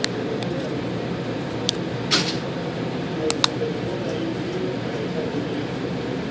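The plastic clips of a Samsung Galaxy Mega's frame clicking free as a plastic opening tool pries around the phone's edge: several sharp clicks, two in quick succession about three and a half seconds in, and a brief scrape of the tool about two seconds in, over steady background noise.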